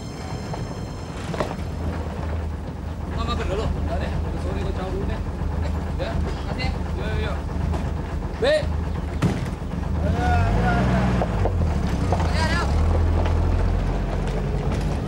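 Engine of a 4x4 jeep running at low speed and idling, a steady low rumble that grows louder about ten seconds in, with short bits of voices over it.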